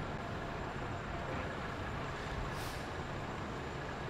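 Steady city street background noise with a low vehicle engine hum, and a brief faint hiss about two and a half seconds in.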